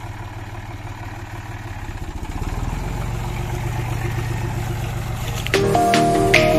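John Deere 5310 tractor's three-cylinder diesel engine running steadily as it drives over mustard crop spread on tarpaulins to thresh it, growing louder as it comes closer. Background music starts suddenly about five and a half seconds in and becomes the loudest sound.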